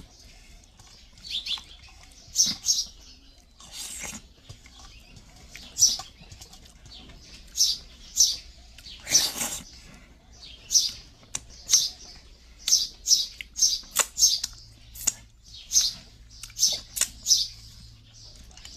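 Fingers mashing and mixing food in a brass bowl, making short scraping sounds against the metal at irregular intervals, about one to two a second and more often in the second half.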